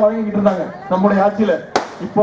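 A man making a speech into a microphone over a loudspeaker system, with two sharp cracks about a second and a quarter apart cutting through it.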